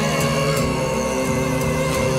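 Live Mongolian folk music on traditional instruments, horsehead fiddles and a plucked lute, with a steady low drone under a melody that moves in steps.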